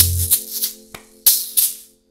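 Egg shakers shaken in rhythm, with a few sharp hand hits, over the end of a backing track. The track's bass drops out soon after the start, and the playing dies away by the end.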